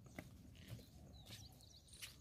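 Near silence: faint outdoor background with a few soft taps.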